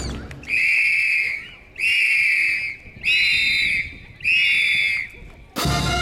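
Four long, high whistle blasts, about a second apart, during a pause in the dance music, which comes back in near the end.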